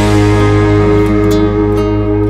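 A country band's instrumental outro with no vocals. The band holds a long sustained chord, with guitars ringing.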